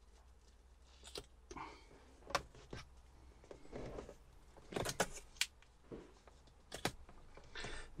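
Faint, scattered clicks and light taps of hands working a taped paper template against a plastic van dashboard, over a low steady hum.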